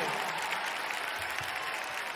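Concert audience applauding, slowly dying down.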